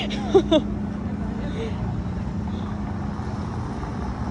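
A brief laugh at the start, then a steady low outdoor rumble on the phone's microphone.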